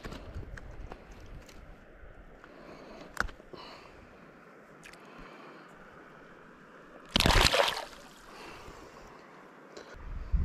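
Faint water sounds with a few small clicks, then a short, loud splash about seven seconds in as a fish is let go back into the river.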